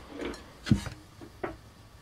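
A couple of light clicks as a hand handles a Raspberry Pi touchscreen case on a wooden bench, one about two-thirds of a second in and another about a second and a half in. Under them is the faint hum of the Pi's newly replaced cooling fans, now barely audible.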